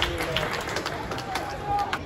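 Footballers shouting calls to each other during play, with a few sharp knocks heard among the voices.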